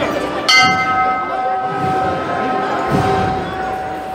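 The throne's small hand bell struck once, about half a second in, and left ringing and slowly fading: the capataz's signal to the bearers of the procession throne.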